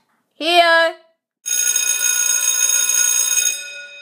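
A short vocal sound about half a second in, then an electric bell like a school bell rings steadily for about two seconds and dies away.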